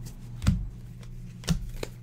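Bowman baseball trading cards being handled and sorted by hand onto piles on a table: two sharp card snaps about a second apart and a fainter one near the end, over a low steady hum.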